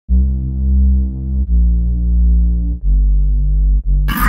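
Deep synth bass playing long sustained notes with no drums, a new note about every one and a half seconds: the opening of an instrumental electronic track.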